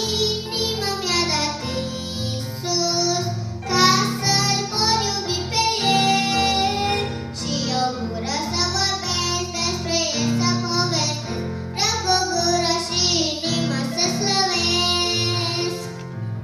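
A young girl singing a Romanian children's hymn into a handheld microphone, over an instrumental accompaniment that holds steady low notes beneath her voice.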